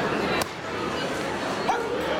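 Spectator chatter echoing in a gymnasium, with a single sharp slap about half a second in as a wushu performer lands from an aerial flip on the wooden floor.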